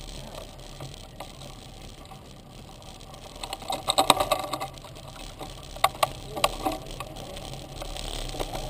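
Mountain bike rolling over a dirt trail, heard from the handlebars, with a steady low rumble and the bike rattling and clattering over bumps: a burst of knocks about four seconds in and two sharp knocks around six seconds.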